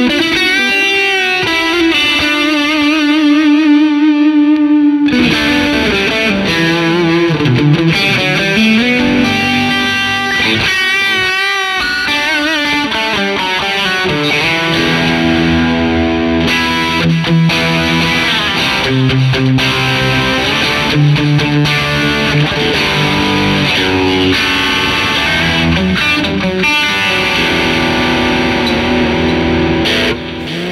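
Electric guitar, a Fender Stratocaster, played through a Wampler Pantheon Deluxe dual overdrive pedal set for a high-gain distortion stack, into a Fender '65 Twin Reverb amp. It opens with a held lead note with wide vibrato, then from about five seconds in changes to heavier distorted riffing with low chords and lead lines.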